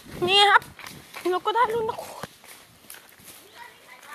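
Two loud, high-pitched shouts, the first about a quarter second in and a wavering one around a second and a half in, over footsteps crunching and rustling through dry palm fronds and leaves as someone runs.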